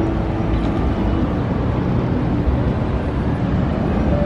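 Steady outdoor rumble and hiss, heaviest in the low end: city traffic on the streets below, with wind on the microphone.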